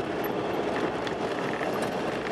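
A car driving on a gravel road, heard from inside the cabin: steady tyre and road noise with the engine beneath, and a few faint ticks of loose stones.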